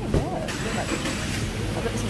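Market ambience: a steady low rumble with indistinct voices, and a brief thump just after the start.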